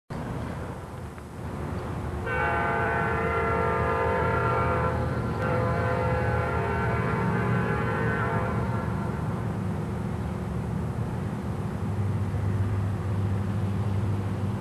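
Amtrak EMD F40PH diesel locomotive's air horn sounding two long blasts: the first starts about two seconds in, and the second follows a brief break and fades away. Under the horn is a low, steady rumble of the diesel engines, which grows louder near the end.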